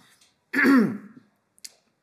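A woman clearing her throat once, about half a second in, then a faint click.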